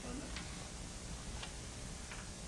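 Room tone with two sharp ticks about a second apart and a faint murmur of voices around them.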